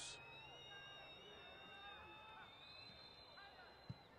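Near silence: faint open-air stadium ambience. Near the end comes a single short thud, the extra-point kick being struck.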